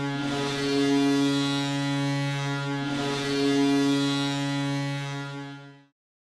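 Hockey arena goal horn blowing in long, loud blasts over crowd noise, restarting about a quarter second in and again near three seconds, then fading out just before the end.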